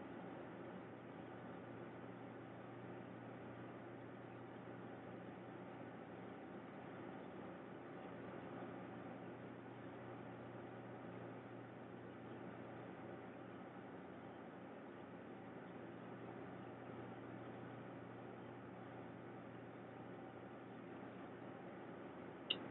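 Faint, steady hiss with a low hum underneath: room tone.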